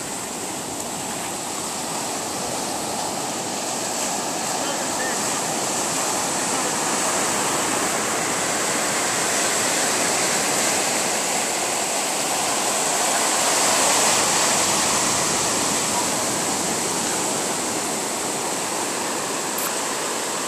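Ocean surf breaking and washing over the shallows: a steady rushing noise that swells gently and is loudest about two-thirds of the way through.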